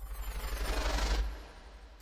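A whoosh transition sound effect that swells for about a second and then fades, with a fast low flutter underneath.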